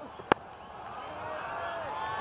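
A cricket ball struck once by the bat, a single sharp crack picked up by the stump microphone, on a delivery aimed at the stumps. Crowd murmur swells behind it in the second half.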